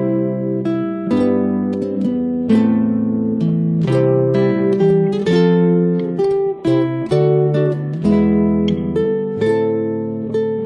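Nylon-string classical guitars played fingerstyle as a duo: a continuous run of plucked notes and chords, each ringing and fading, over a moving bass line.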